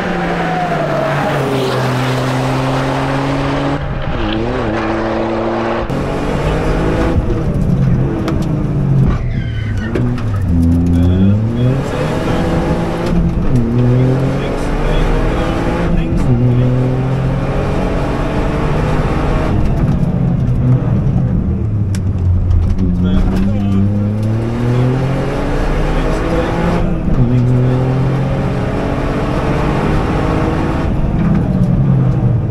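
Toyota GR Yaris rally car's 1.6-litre turbocharged three-cylinder engine at full stage pace. At first the car is heard passing, its engine pitch falling. From about six seconds in it is heard from inside the cabin, revving up and dropping again over and over through gear changes and lifts.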